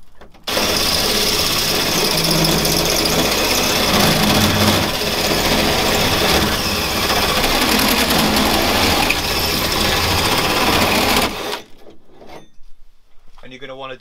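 Power drill driving a 57 mm hole saw through the van's sheet-metal side panel, cutting a corner hole for a window opening. It starts about half a second in, runs steadily for about eleven seconds, then stops.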